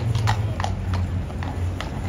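Shod hooves of a cavalry horse striking stone paving as it steps and turns: a run of about six sharp clip-clops, two to three a second.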